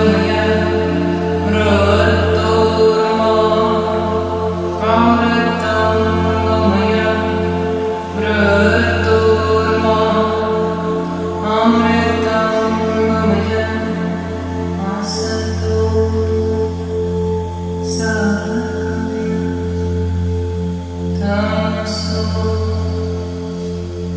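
Tibetan singing bowls struck with a mallet, their deep hum and several overlapping tones ringing on steadily. Over them a woman chants a mantra in long sung phrases, a new phrase starting every three to four seconds.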